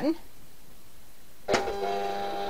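Silhouette Cameo Pro cutting machine's motor starting suddenly about one and a half seconds in, with a steady even whine, as it runs its load routine after the load button is pressed with no mat set up to feed.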